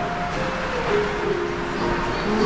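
Steady background noise in a restaurant, with faint background music holding a few low notes.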